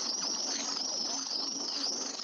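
A dense chorus of many high-pitched chirps overlapping one another, rapid and warbling, running steadily.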